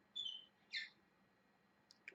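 Pet parrot chirping twice, two short high-pitched calls about half a second apart, faint.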